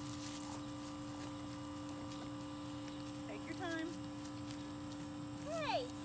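A steady low hum runs under two brief vocal sounds: a short one about halfway through, and a falling cry near the end.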